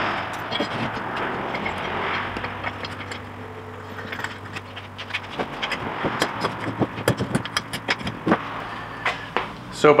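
An even rushing noise, then from about halfway a quick run of clicks and knocks as black steel sport-bar tubes and brackets are handled and fitted together.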